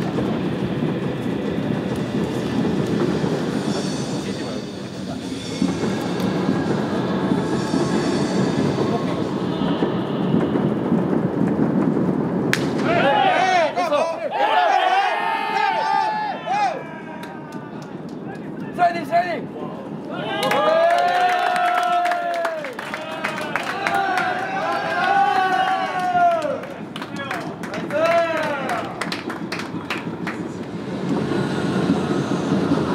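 Baseball players shouting and cheering in the dugout, with several overlapping yells from about halfway through, over a dense, echoing ballpark noise.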